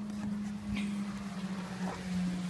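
A steady low hum with a faint hiss underneath, and two brief soft knocks, one just under a second in and one near the end.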